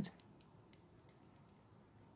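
Near silence, with a few faint light ticks in the first second as the makeup brush and the small glass of glitter gel are handled.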